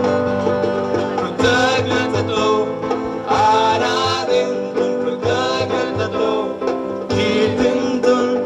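Live choir song: lead and backing voices singing over keyboard and strummed acoustic guitars with a low beat, the voices swelling about a second and a half in and again near the end.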